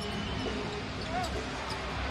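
Basketball being dribbled on a hardwood court over the steady noise of an arena crowd, with a few faint sharp sounds in the middle.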